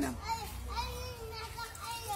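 A man's voice ends on a word, then faint voices of children carry in from the street over a steady low rumble.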